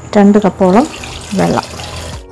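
Water poured from a metal vessel into a steel pressure cooker pot of cubed raw papaya and spices: a steady splashing pour that starts just after the beginning.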